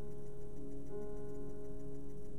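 Calm background music of held notes in slow chords, the chord changing about a second in, over a faint steady ticking pulse.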